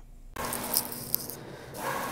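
Rustling and handling noise with a couple of light clicks over a steady faint hum, starting abruptly about a third of a second in.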